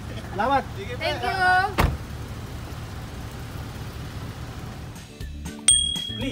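Car door shutting with a single sharp knock about two seconds in, after brief voices, followed by the car's engine running steadily with a low rumble.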